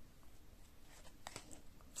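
Faint handling of glossy trading cards, a few light clicks and rustles as a card is flipped over in the hand; otherwise close to silence.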